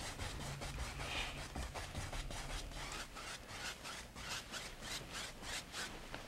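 A two-inch brush scrubbing wet oil paint on a canvas in quick crisscross strokes, about three a second: titanium white being blended into the dark sky.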